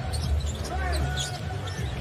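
A basketball being dribbled on a hardwood arena court, heard through an NBA game broadcast, with arena crowd noise and faint voices under it.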